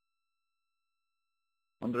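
Near silence with a faint, steady electronic tone of several pitches held together, which stops when a voice begins near the end.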